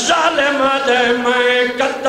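A male zakir's voice chanting a mourning lament through a public-address microphone, in long held notes with a wavering pitch, with a short break for breath near the end.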